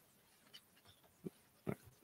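Near silence: room tone, with a few faint, brief noises about a second and more in.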